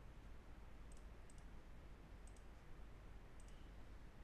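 Faint computer mouse clicks: four quick press-and-release pairs spread over about two and a half seconds, over a low steady hum.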